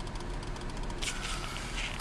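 Truck engine idling, heard from inside the cab while stopped in traffic, a steady low hum under general traffic noise. A brief hiss comes about a second in.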